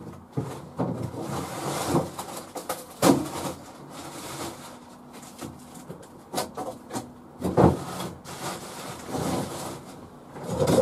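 Irregular knocks, bumps and rubbing, like doors, drawers or cupboards being moved and handled, with louder thumps about three seconds in and again past the middle.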